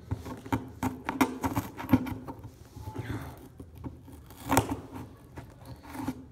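Cutting open appliance packaging: a run of sharp snips, clicks and scrapes, with the loudest snaps about two seconds in and again around four and a half seconds.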